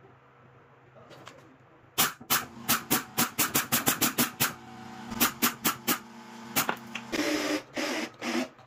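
Cordless screwdriver working screws into a plywood rail: a quick string of sharp clicks, about four a second, starting about two seconds in, with a motor tone under them in the middle.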